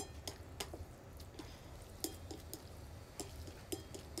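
Wooden chopsticks mixing sauced instant noodles on a ceramic plate: soft wet squishing with irregular light clicks of the chopsticks against the plate.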